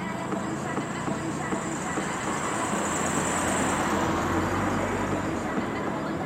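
Road traffic noise, with a vehicle passing along the road that grows louder about halfway through and rumbles lower toward the end.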